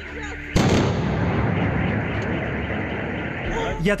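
A single loud explosion about half a second in, its sound fading slowly over the next three seconds or so.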